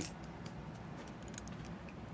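Faint handling noise: a few light, scattered clicks and rattles as someone fumbles with small objects.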